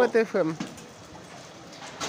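A person's voice for about the first half-second, falling in pitch, then faint steady background noise.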